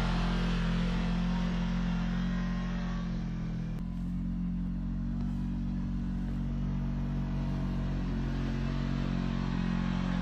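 Side-by-side UTV engines running steadily at low revs as the machines crawl up a rocky hill climb, with no revving swells. The sound changes abruptly about four seconds in, from one machine to the next.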